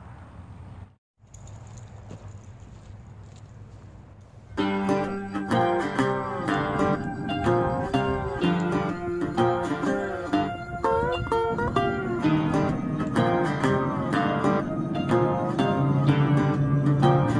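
Low outdoor background sound that drops out briefly about a second in, then background music with plucked acoustic guitar starts suddenly about four and a half seconds in and carries on loud.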